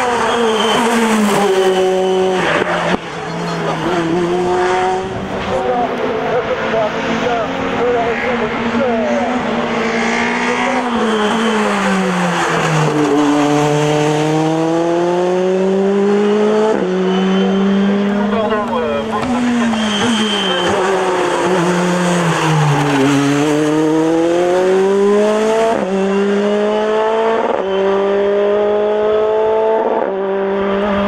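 Tatuus Formula Renault 2.0 race car's two-litre four-cylinder engine at high revs, climbing in pitch through the gears with sharp upshifts. Twice the pitch slides down as the car slows and downshifts for bends, then climbs hard again.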